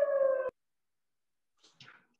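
A long, slowly falling howl cuts off suddenly about half a second in, then near silence with a faint short sound near the end.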